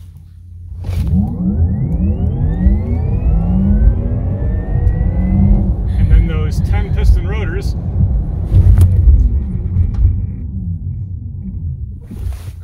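Porsche Taycan under way, heard from inside the cabin: a deep steady rumble of road and drivetrain noise with a whine that rises in pitch over the first few seconds as the car accelerates, then falls again near the end.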